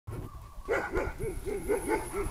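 An animal calling in a quick run of short, pitched calls, about four a second, starting a little under a second in.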